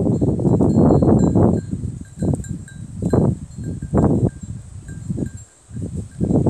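Dry tall grass and brush rustling and crackling as goats push through and browse it: a dense rustle for the first second and a half, then separate short bursts. Faint light tinkling is heard throughout.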